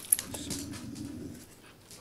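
A dog's low growl lasting about a second and a half, after a small click at the start.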